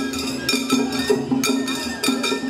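Shagiri festival music: small hand-held metal gongs (kane) struck in a quick, ringing pattern, roughly two strikes a second, over drumming from the float's taiko.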